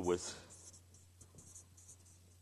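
Marker pen writing on a paper flipchart pad: a run of short, faint scratchy strokes as a word is written out.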